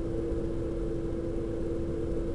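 Steady low background hum with a single constant tone in it, like a running fan or small machine.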